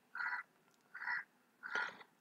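Three short, faint animal calls, evenly spaced about two-thirds of a second apart, in the background.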